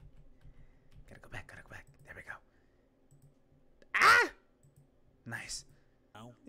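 A person's voice: faint short vocal sounds early on, then a loud exclamation falling in pitch about four seconds in, and a brief shorter one after it.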